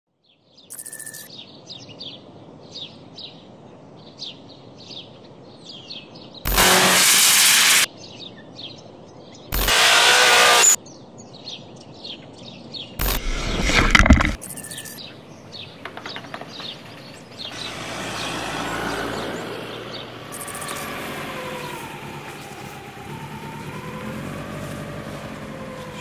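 Small birds chirping in quick, repeated calls. Three loud rushing bursts, each about a second long, break in as snow is thrown over the camera. Later a softer wavering tone rises and falls.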